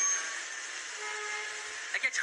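Steady running noise of a passenger train heard from inside the carriage, with a few faint held tones from about halfway through.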